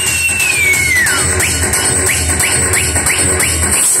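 Electronic dance music played loud over a DJ's sound system, with a heavy bass beat. A high lead line slides slowly down over the first second or so, then gives way to short rising blips, about three a second.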